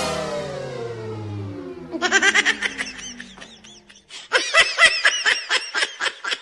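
A music hit fades out while sliding down in pitch. From about two seconds in comes a run of quick, repeated laughter, which breaks off briefly near four seconds and resumes louder.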